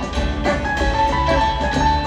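Live rock band playing an instrumental jam: sustained electric guitar lines over drums and a heavy bass low end, recorded from the audience in an arena.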